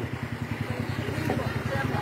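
A small boat's engine running steadily with a fast, even putter.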